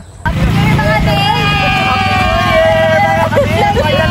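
Small motorcycle engine of a sidecar tricycle running as it drives along, with voices calling out over it. The engine comes in a moment after the start.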